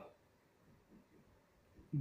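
A pause in a man's Hindi speech: his voice trails off at the start, near silence with a few faint small sounds follows, and he starts speaking again at the very end.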